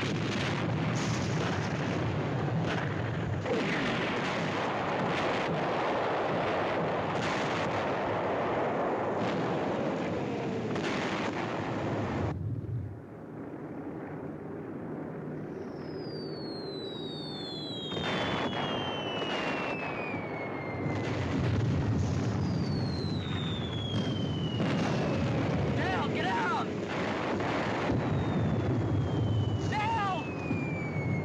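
Air-raid battle sound effects: a string of loud bomb explosions, then a short lull about twelve seconds in. After that come the descending whistles of falling bombs, several in turn, with more explosions.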